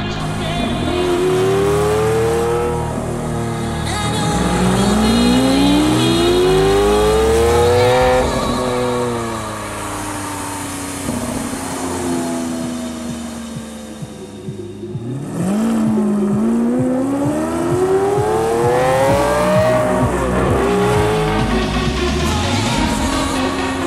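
Lamborghini Aventador V12 engine revving hard in three long rising pulls, each dropping back off after it peaks, with a quieter stretch in the middle.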